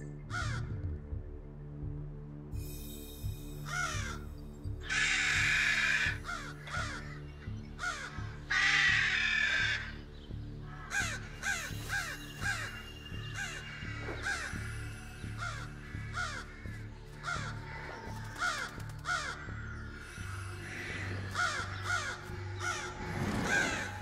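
A group of American crows cawing again and again in scolding calls, the alarm they raise at a face they have learned means danger. The calls come thickest and loudest about five and nine seconds in, over a steady music bed.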